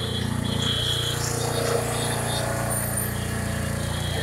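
Busy street ambience: a steady low rumble of traffic with faint voices in the background and a thin high tone that comes and goes.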